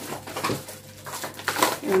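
Plastic shopping bags and packaging rustling and crinkling as groceries are pulled out, a quick irregular run of crackles and scrapes, loudest about half a second in and again after a second and a half.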